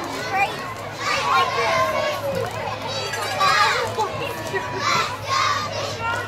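Children's voices shouting and calling out over the general murmur of a crowd at a youth football game, with the loudest calls about a second in, around three and a half seconds in, and near the end.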